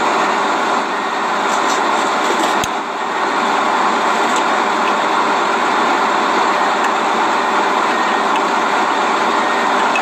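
Steady running noise of heavy equipment's engine at a work site, an even drone with no change in pace.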